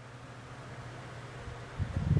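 Quiet room tone with a steady low hum, and a few low bumps near the end.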